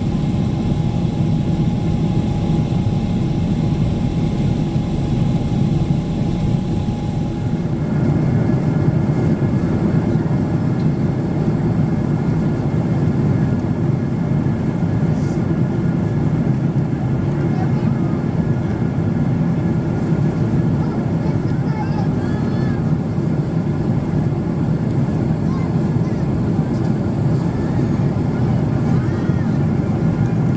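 Steady jet cabin noise inside a Boeing 777-300ER climbing after takeoff, heard from a window seat beside the GE90 engine: a loud, even, low-pitched rush of engine and airflow. A faint high hum drops out about seven seconds in.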